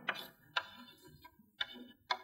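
Chalk tapping on a blackboard while writing: a few faint, short, sharp taps, spaced about half a second to a second apart.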